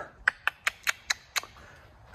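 A quick run of about six sharp clicks, roughly five a second, spacing out a little toward the last one.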